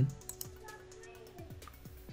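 Quiet background music with a few light clicks of a computer mouse.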